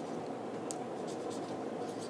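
Faint pen strokes scratching on a writing surface, with a light click about two-thirds of a second in, over steady low room hiss.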